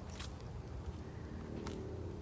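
Quiet outdoor background: a low steady rumble with two faint ticks, one just after the start and one near the end.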